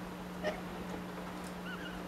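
Quiet room tone with a steady low hum, a single light click about half a second in, and a few faint short squeaks near the end.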